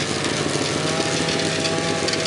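Snowmobile engine running at a steady pitch as the sled moves past, with a hiss of track and snow noise.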